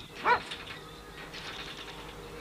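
A caged white cockatoo gives one short call about a third of a second in, its pitch rising and falling.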